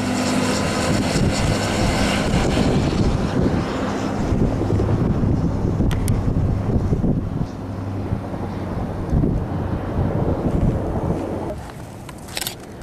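A steady engine drone with a low hum, mixed with wind noise on the microphone; it eases off somewhat in the second half.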